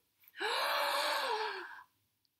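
A woman taking one long, deliberate deep breath in through the mouth, audible as a breathy gasp lasting about a second and a half.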